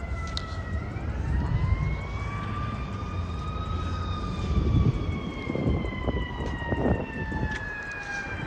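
A siren wailing, its pitch climbing slowly over about three seconds and then sinking slowly, over a low rumble.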